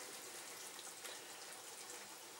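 Faint, steady bubbling hiss of sauce simmering in a frying pan as a wooden spatula stirs it, the cornstarch slurry just added to thicken it.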